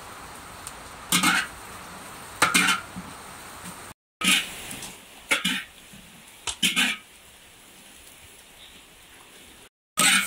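Green peppers stir-frying in a large iron wok: a steady sizzle, with two loud scrapes of a metal spatula about a second apart. After a short break, more short scrapes over a fainter sizzle.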